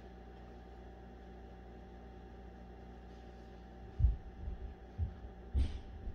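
Steady low hum, then from about four seconds in a few dull low thumps and rustles: handling noise as a sock is worked onto a flat sublimation jig.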